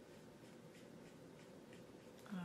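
Near silence, with a string of several faint, short strokes of a wet paintbrush working on watercolour paper.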